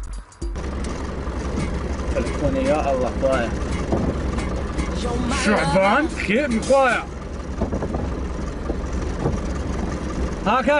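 Vehicle engine running steadily, heard from inside the cab. It sets in suddenly about half a second in, and voices come and go over it.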